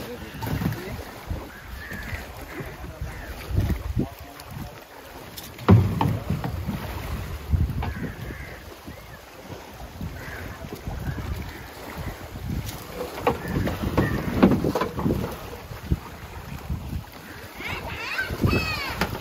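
Shallow water splashing and lapping around a wooden dugout canoe, with wind buffeting the microphone. Irregular knocks and thuds come from the canoe and a plastic basket being handled, the sharpest about six seconds in.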